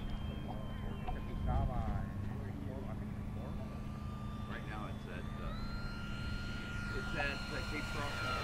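Electric motor and propeller of a small RC warbird (BlitzRC 1100 mm Spitfire Mk24, 3S battery) at near full throttle: a thin, very quiet steady whine that steps up in pitch a little past halfway through as the plane comes in on a low pass. A low rumble of wind on the microphone runs underneath.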